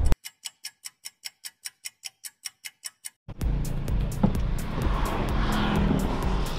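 A rapid, even ticking, about seven ticks a second, over silence. About three seconds in, it gives way to the steady low rumble of a car's cabin while driving.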